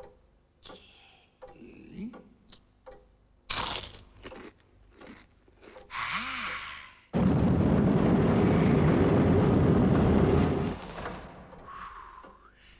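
A crunchy bite into fried chicken about three and a half seconds in, then a short sharp gasp a couple of seconds later. This is followed by a loud, steady rushing roar of about three and a half seconds that cuts off abruptly.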